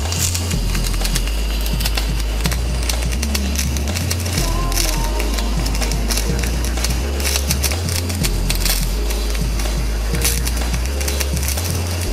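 Background music with a repeating bass line, over the steady irregular crackle of electric arc welding on steel.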